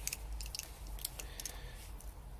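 A few faint, scattered clicks of a digital caliper being handled before a measurement.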